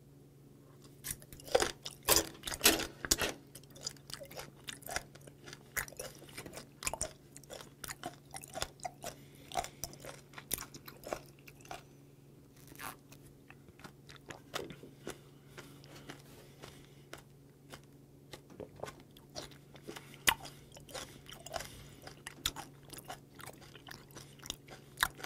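Close-up chewing of fermented skate (hongeo), with irregular wet crunches and clicks as the cartilaginous flesh is bitten and ground, over a faint steady low hum.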